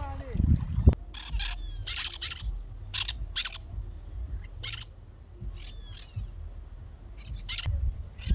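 Small birds giving short, sharp chirping calls at irregular intervals, some in quick pairs, with a few brief falling whistles midway, over a low wind rumble on the microphone.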